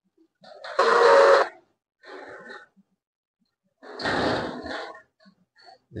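A person breathing out heavily close to the microphone: a loud breath about a second in, a fainter one just after, and another heavy breath about four seconds in.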